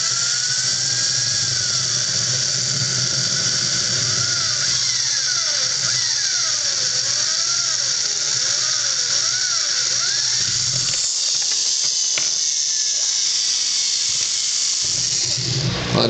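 Electric drill with a quarter-inch bit boring through a PVC pipe cap, running steadily under load. A wavering squeal rises and falls over the high motor whine for several seconds. The sound cuts off right at the end.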